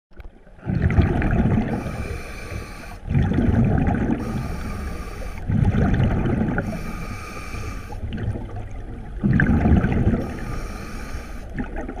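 Scuba diver breathing through a regulator underwater: four loud rumbling bursts of exhaled bubbles, every two to three seconds, with a thinner hiss between them.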